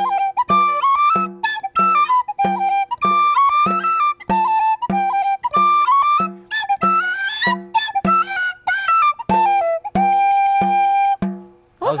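Irish penny whistle (brass tin whistle) playing a quick reel tune over a bodhrán frame drum beaten with a tipper in a steady beat, about two strokes a second. The tune closes on one long held note a little before the end.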